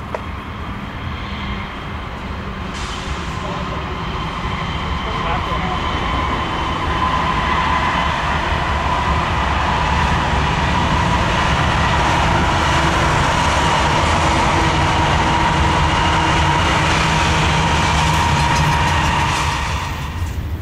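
Train approaching, its rumble growing steadily louder over several seconds with a steady whine above it, then cutting off suddenly near the end.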